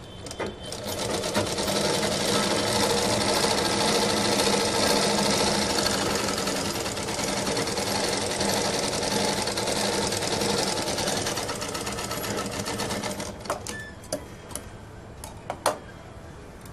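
Sewing machine running steadily as it stitches cloth, stopping sharply about thirteen seconds in; a few separate light clicks follow.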